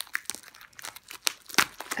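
Plastic wrapping being handled and pulled open: irregular crinkling and crackling, with a few sharper crackles about one and a half seconds in.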